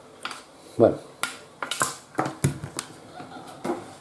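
A metal spoon scraping and knocking inside the metal bowl of an electric coffee grinder, clearing out ground dried salt cod: a string of short clicks and scrapes at uneven intervals.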